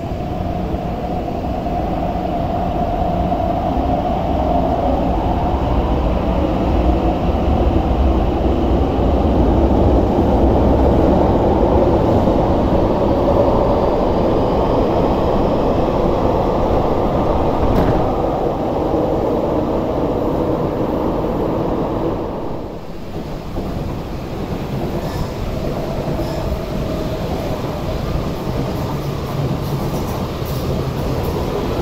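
MTR Tuen Ma Line electric multiple-unit train running past along the platform behind the glass screen doors: a steady rumble of wheels on rail and traction noise that grows over the first ten seconds and then holds. After a short break about three-quarters of the way through, a second electric train is heard running past on an open-air track, a little quieter.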